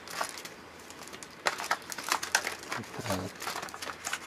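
Stiff clear plastic blister packaging crackling and crinkling as it is handled, a dense run of sharp crackles starting about a second and a half in.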